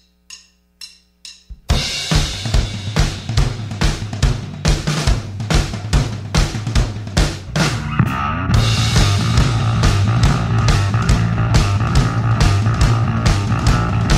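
Four even clicks count in, then a rock band kicks in with a fast drum-kit beat and bass guitar. About eight seconds in the sound gets fuller as more distorted instruments join.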